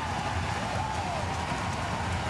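Arena crowd cheering steadily after a goal.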